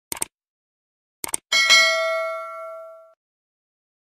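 Subscribe-button animation sound effect: two quick clicks, two more about a second later, then a bell ding that rings out and fades over about a second and a half.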